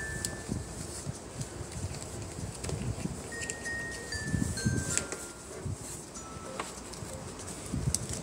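Scattered single chime tones at several different pitches, each ringing briefly, over soft handling sounds as hands adjust the straps and buckle of a plastic toy doll car seat.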